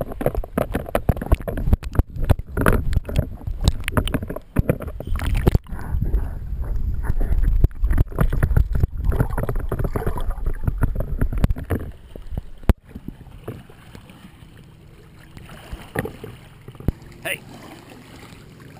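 Lake water sloshing, splashing and gurgling around a waterproof action camera held at the waterline, dipping in and out of the water beside a dog swimming close by. After a sharp knock about 13 seconds in, it turns to a quieter, steady wash of lapping shallow water.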